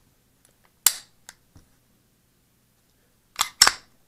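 Sharp metallic clicks from the unloaded Canik TP9 SA pistol's mechanism as it is handled: one about a second in, a couple of faint ticks after it, then two clicks in quick succession near the end.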